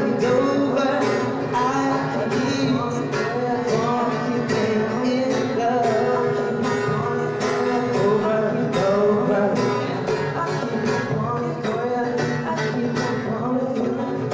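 A young male voice singing to an acoustic guitar, layered over a steady percussive beat and backing vocals that he laid down himself.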